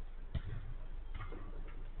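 Knocks of a football in play: one sharp knock about a third of a second in, then two fainter ones.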